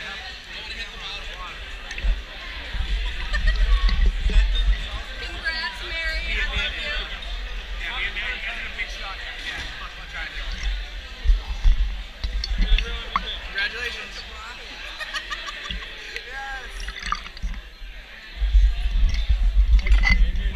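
Voices and music in a crowded room, with bursts of low rumbling knocks from a camera strapped to a bottle as it is handled and tipped up to drink, about two seconds in, near the middle and near the end.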